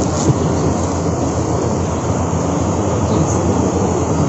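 Steady low rumbling background noise with the indistinct chatter of a crowd underneath.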